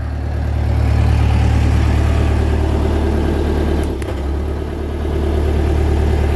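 JLG 600A boom lift's engine running at a steady idle, with a single click about four seconds in and a brief dip in level.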